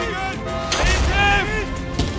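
A single loud gunshot bang about three-quarters of a second in, followed by a deep low rumble, over dramatic background music.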